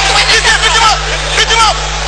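A crowd of people shouting over one another, many voices at once, with a steady low hum underneath.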